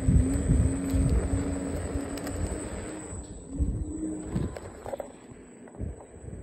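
Pony-drawn carriage rolling over asphalt: wheels rumbling and the frame knocking and rattling, with an on-and-off wavering squeak, easing off after about four and a half seconds.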